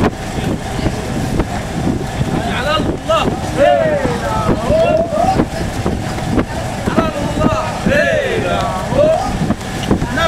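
Several men's voices calling out to one another over a steady low boat-engine rumble, with wind on the microphone.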